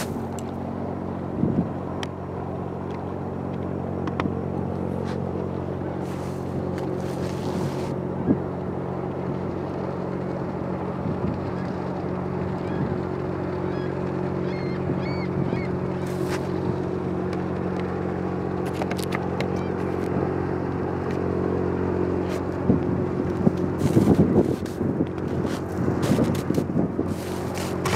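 Steady low drone of the passing lake freighter Tecumseh's engines, several steady tones growing slightly louder as the ship draws nearer. Uneven bursts of noise come near the end.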